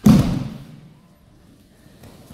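A single heavy thud at the start as an aikido partner's body lands on the tatami in a breakfall, dying away with a short echo.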